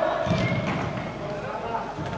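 Footballers' voices calling out in a large indoor sports hall, with a cluster of dull thuds from play on the artificial turf shortly after the start.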